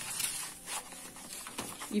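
Sheet of brown kraft paper rustling and crinkling as it is handled and shifted under a picture frame, in short irregular scrapes.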